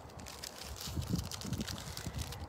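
Rustling and handling noise as jewelry is picked up, with faint clicks, over a low rumble of wind on the microphone.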